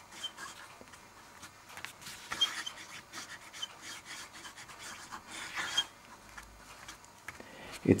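Broad nib of a Montblanc Meisterstück 144 fountain pen scratching softly across paper while writing, in a series of short strokes, a few of them a little louder.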